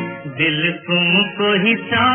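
Hindi film song: a voice singing a melody that bends and glides, over instrumental accompaniment. The sound is dull and muffled, with no high end.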